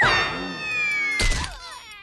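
Cartoon fall sound effect: a long, slowly descending whining tone as the tiny characters drop from the tabletop, with a short thud about 1.3 seconds in as they hit the floor.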